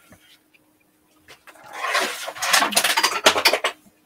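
Rustling and scraping of paper as the art journal is handled and lifted off the work surface. The noise starts about a second and a half in and lasts about two seconds.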